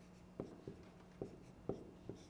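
Pen writing on an interactive whiteboard screen: about five faint, short taps as the stylus tip strikes the display while forming characters.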